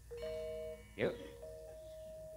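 Soft gamelan metallophone notes ringing at a steady pitch between sung phrases, with one short vocal call sliding in pitch about a second in.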